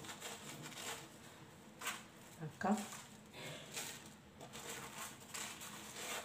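Soft stuffed batbout flatbreads being handled and pulled apart by hand: faint rustling and soft tearing of the bread.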